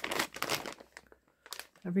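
Clear plastic bag full of small clay charms crinkling as it is handled. The crinkling is busiest in the first second, then stops, with a brief rustle again shortly before the end.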